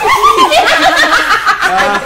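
Several voices laughing and chuckling in short, overlapping bursts, layered as part of an experimental vocal composition.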